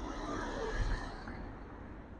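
Street traffic noise as a van drives past close by: an even hiss of engine and tyres over a low rumble, swelling a little around the middle.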